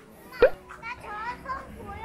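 High-pitched children's voices: one loud, sharp cry rising in pitch about half a second in, then quick chattering calls.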